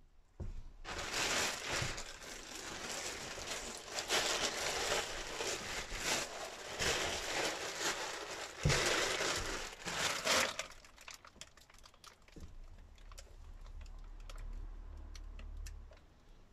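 Clear plastic sheeting crinkling and rustling as it is handled and bunched up for about ten seconds, then quieter rustling with a few light clicks and a low hum near the end.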